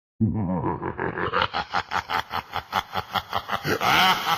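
A laugh: one long drawn-out note, then a run of quick, evenly spaced ha-ha pulses, about five a second.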